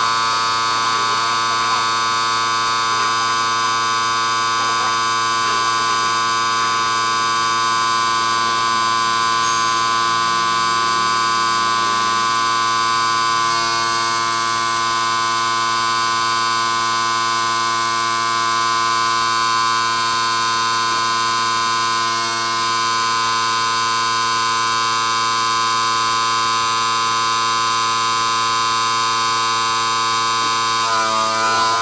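ARB high output air compressor running steadily, a constant buzzing drone at a fixed pitch, as it pumps air through a coiled hose into a flat tire.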